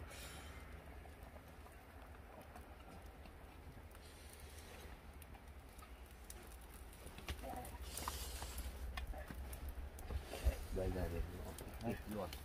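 Quiet outdoor background with a steady low rumble, and a few faint light clicks and knocks in the second half.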